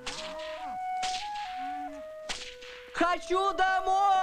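Two sharp whip cracks, one at the start with a short decaying tail and one a little past two seconds in, over a film-score melody of long held notes. Near the end a louder, wavering musical passage begins.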